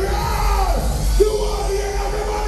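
A male performer's live vocals yelling and singing into a microphone over loud music with a heavy bass, through a club sound system; about halfway through he holds one long note.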